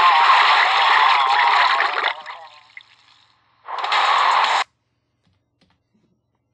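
Vomiting sound effect: a retching voice over a loud stream of splashing liquid, which dies away about two seconds in. A second short splash follows about a second later.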